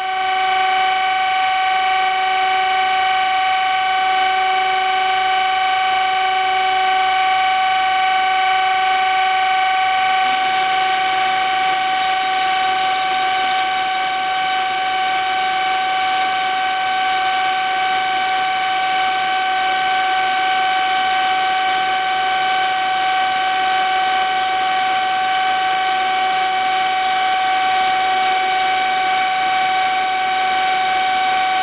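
Surface grinder with a Harig Grind-All fixture running with a steady high whine. About ten seconds in, the hiss of the grinding wheel cutting the spinning steel edge-finder shank joins it and continues.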